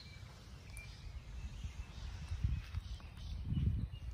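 Quiet outdoor garden ambience with a steady low rumble and a few soft low thumps in the second half as the handheld camera is moved.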